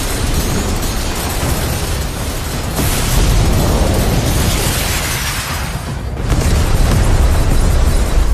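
Animated battle sound effects: energy blasts and explosions with deep rumbling, layered over background music. A sharp blast hits about three seconds in, and the sound swells again near the end.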